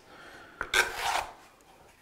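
Wide steel drywall knife scraping across a knockdown-textured wall, spreading joint compound into the texture's voids. One stroke is heard, starting about half a second in and lasting under a second.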